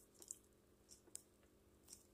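Near silence: room tone with a few brief faint clicks.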